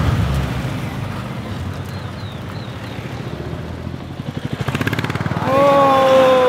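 Vehicle engine and road noise heard from inside the cab, fading out; near the end a calf bawls, one long, loud call that sags slightly in pitch.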